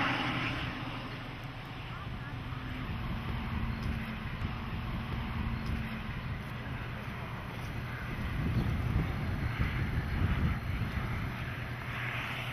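Wind blowing across the microphone, gusting harder a few seconds before the end, over a steady low hum.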